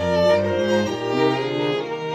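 A string quartet of two violins, viola and cello playing a tarantella, held bowed notes changing pitch over a low cello line.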